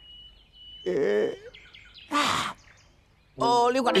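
Forest bird calls: a thin high whistle, short chirps and a harsh caw about two seconds in. A man's voice comes in loudly near the end.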